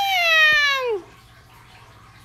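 A domestic cat's long meow, holding steady and then sliding down in pitch before it stops about a second in.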